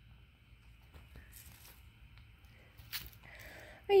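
A dog sniffing and nosing about in a pile of logs: faint short snuffles and rustling, with one sharp click about three seconds in, over a faint steady high hum.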